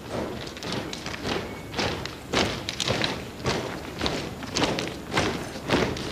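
Footsteps of several soldiers walking in a column: heavy, uneven footfalls about two a second.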